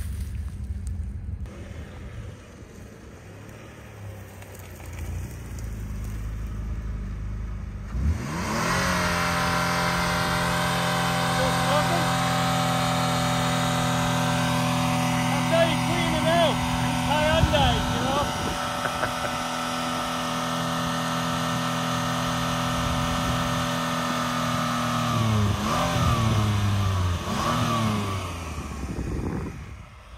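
A smoking, crashed Hyundai SUV's engine running at low revs, then about eight seconds in jumping to wide-open throttle and holding a steady full-rev scream for over fifteen seconds while it burns oil. Near the end the revs fall away and the engine dies.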